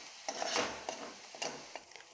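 A steel spoon stirring and scraping through onion-and-spice masala frying in a kadai, in several short strokes over a faint sizzle: the masala is being fried (bhuna) with the onions.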